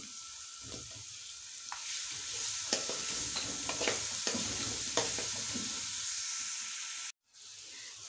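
Spiced onion-tomato masala sizzling in hot oil in a metal wok while a lump of cream is stirred into it with a metal slotted spoon, the spoon scraping the pan now and then. The sizzle grows louder about two seconds in and cuts out briefly near the end.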